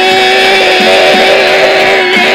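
Instrumental passage of a guitar-rock song, an electric guitar holding one long sustained note over the backing band.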